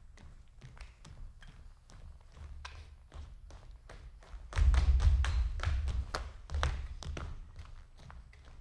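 Dancers' footsteps and taps on a stage floor, with a run of heavier, louder thuds and scuffing steps from about halfway through.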